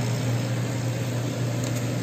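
Laser cutter running: a steady low hum with an even whir.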